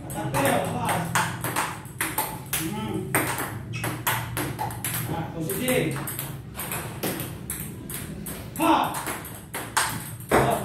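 Table-tennis ball in a steady forehand practice rally: it clicks off the rubber paddles and bounces on the table, about two sharp ticks a second.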